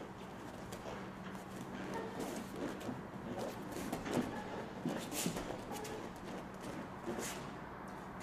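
Faint rustling of heavy cotton gis and scuffing of bare feet on foam mats as a man kicks from his back, sits up and stands, over a steady low room hum.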